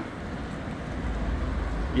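Low rumble of road traffic, growing louder about halfway through.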